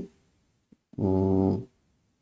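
A man's voice holds one steady, unchanging vocal sound, like a drawn-out filler 'mm' or 'uh', for under a second about a second in. Otherwise near silence.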